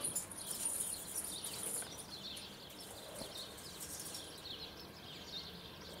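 Small songbirds chirping over and over in the garden. A high, hissing rustle runs through the first couple of seconds.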